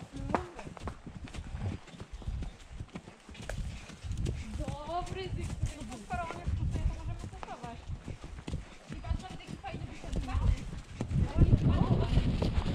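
Horses walking on a dirt forest track, their hooves clip-clopping in an uneven patter, with indistinct voices talking partway through and near the end.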